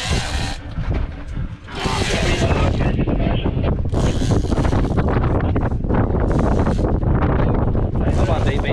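Strong wind buffeting the microphone on a boat at sea, a constant low rumble with gusts of hiss that come and go.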